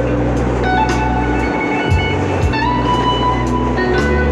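A busker's guitar playing a melody of held notes over a steady beat, with the rumble of a moving subway car underneath.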